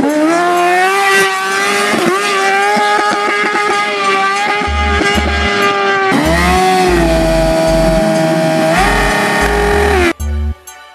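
Sportbike engine held high in the revs during a burnout, with the rear tyre spinning and screeching against the tarmac. The revs sag about six seconds in and climb back up near the end. Bass-heavy music beats come in about halfway.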